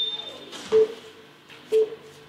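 Countdown timer beeping once a second, short beeps all on the same low pitch, counting down to the start of a timed exercise interval.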